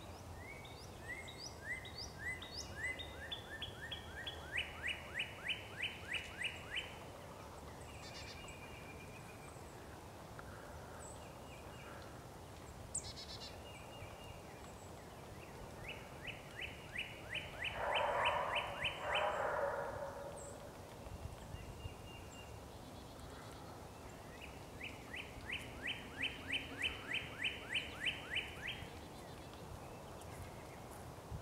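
A songbird singing three bouts of quick, evenly repeated short notes, each a few seconds long. A brief louder rushing noise, the loudest sound here, comes in the middle of the second bout.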